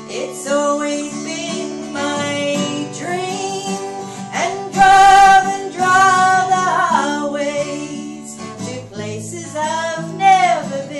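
A woman singing with a strummed acoustic guitar, her voice holding long notes and loudest about five seconds in.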